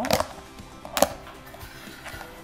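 Kitchen knife cutting an onion on a cutting board: a few sharp knocks, one right at the start and another about a second later.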